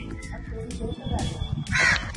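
A crow cawing, with one loud harsh caw near the end.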